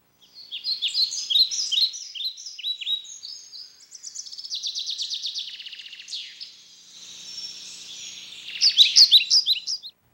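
Several birds chirping and singing: quick sweeping chirps, a fast trill in the middle, and louder chirps again near the end before the sound cuts off suddenly.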